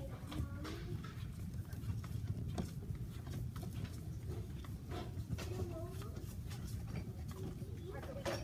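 Shop-floor ambience heard while walking with a handheld phone: a steady low rumble with scattered, irregular clicks and knocks, and faint voices in the background.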